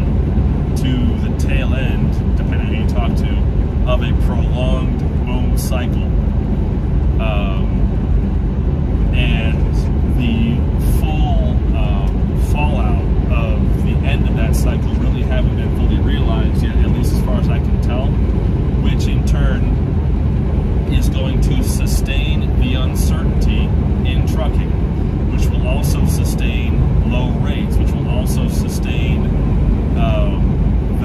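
Steady low drone of a semi truck's engine and road noise heard inside the cab while driving, with a man talking over it.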